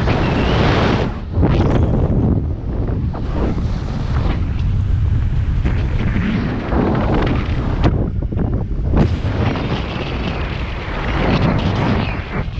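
Wind buffeting the microphone of a speedflying pilot's body-mounted camera in flight: a loud, continuous, gusting rumble from the airspeed, easing briefly about a second in and again around eight seconds.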